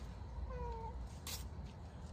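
A cat meowing faintly once, a short call with a slight fall in pitch, about half a second in. A light click follows a little later.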